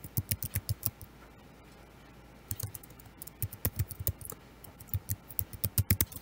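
Typing on a computer keyboard: a quick run of keystrokes, a pause of about a second and a half, then more keystrokes in uneven bursts.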